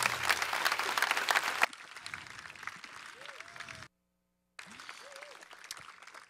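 Audience applauding. Under two seconds in the applause drops abruptly to a much softer level, and it cuts out completely for about half a second near the middle before resuming faintly.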